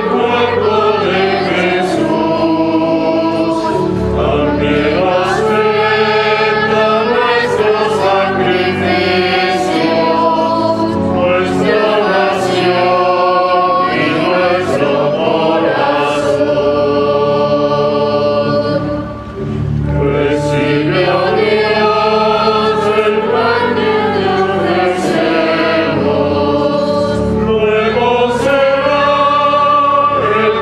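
A choir singing a hymn over sustained low notes, phrase after phrase, with one short break between phrases about two-thirds of the way through.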